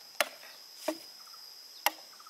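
Machete chopping into the base of a bamboo culm: three sharp strikes, the middle one weaker and duller.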